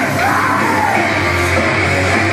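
Loud heavy rock music with yelled vocals, playing steadily throughout.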